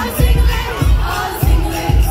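Concert crowd shouting and cheering over loud music from the venue's sound system, whose heavy bass beat lands about every 0.6 seconds.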